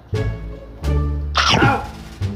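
Background music with plucked and bowed strings, and a short, sharp sound that falls steeply in pitch about one and a half seconds in.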